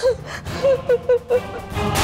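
A woman sobbing in short, broken cries, about five in quick succession, over background music. Near the end a loud swell of dramatic music comes in.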